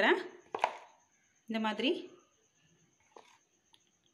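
A spoon knocking against a ceramic plate while stirring thick batter: one sharp clack just after the start, and a fainter knock a little past the middle.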